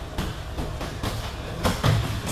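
Kickboxing sparring: a few dull thuds of strikes and feet landing on gym mats over a steady low rumble, with the loudest thump just before the end.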